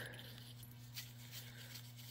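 Faint metallic clicks as small steel pistons are handled and set into the bores of a hydrostatic transmission pump's cylinder block, a couple of them about a second in, over a steady low hum.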